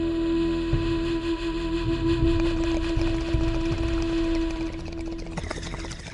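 Music sting for an animated channel logo: one long held tone over deep rumbling hits, getting somewhat quieter about five seconds in.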